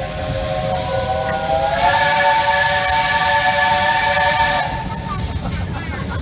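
Steam whistle of JNR Class 8620 locomotive No. 8630 blowing one long blast, heard close behind its tender: a chord of several tones that swells and rises slightly in pitch about two seconds in, with a rush of steam hiss. It cuts off about three quarters of the way through.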